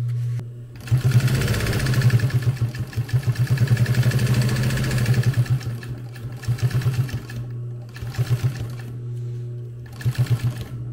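Industrial sewing machine stitching around the edge of a flap made of layered Cordura nylon, velcro and webbing. There is one long run of rapid needle strokes lasting about four and a half seconds, then two short bursts, over a steady low motor hum.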